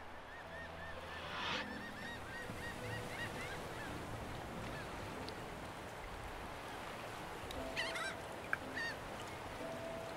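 Birds calling, goose-like honks: a quick run of short calls in the first couple of seconds, and another cluster about eight seconds in.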